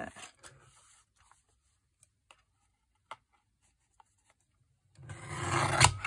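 A few faint taps of paper handling, then about five seconds in a loud rubbing scrape of card sliding across a paper trimmer as it is lined up against the cutting rail, lasting about a second.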